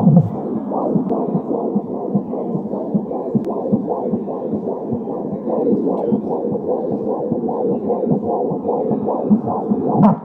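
Fetal heartbeat picked up by an Angelsounds handheld fetal doppler on a pregnant belly, played through a portable speaker: a fast, steady train of whooshing pulses.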